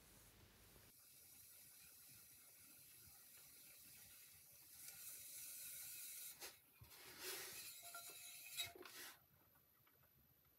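Faint rubbing and hiss of hands and wet clay slurry working against a turning potter's wheel, swelling slightly halfway through, with a few brief soft scrapes near the end.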